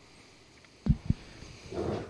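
Quiet room tone broken about a second in by two short, dull, low thumps a fraction of a second apart, as from a table microphone or the table beneath it being bumped; a faint breath follows near the end.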